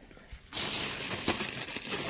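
Plastic grocery bags rustling and crinkling as they are handled, starting abruptly about half a second in.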